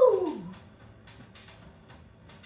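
A woman's voice giving a loud whoop that slides down in pitch and fades out about half a second in, over background music with a steady beat.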